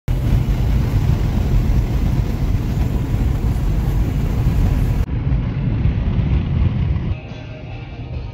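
Steady road and wind noise inside a car cabin at highway speed. About seven seconds in, the noise drops away and music comes in.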